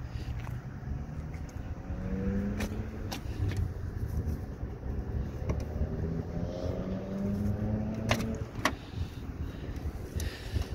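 A car engine running with a steady low rumble, its hum rising slowly in pitch twice. Several sharp clicks come through it, the loudest two about eight seconds in, as the trunk lid is popped open.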